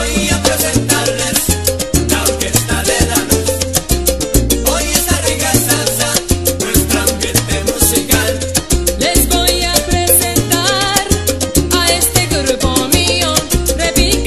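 Salsa music: a full band track with a busy percussion rhythm and a bass line moving in steps.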